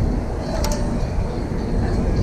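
Wind buffeting the action camera's microphone high on an open deck, a steady low rumble with irregular flutter. A single sharp click about two-thirds of a second in.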